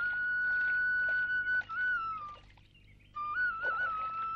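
Background music on a flute: one long held high note that bends down, a short pause about two and a half seconds in, then the flute resumes with small ornamented turns around the note.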